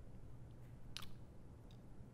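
Quiet room tone with a low steady hum and one faint sharp click about a second in.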